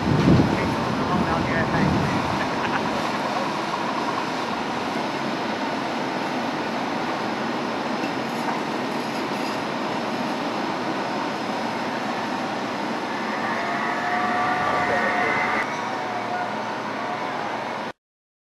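Steady drone of fire apparatus engines running at a fire scene, with a heavy thump just after the start. Indistinct voices are heard toward the end.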